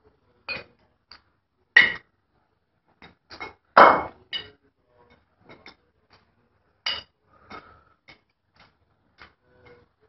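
Irregular knocks and clinks of flair bottles and metal shaker tins being tossed, caught and tapped together in bartending flair practice, the loudest a little under four seconds in.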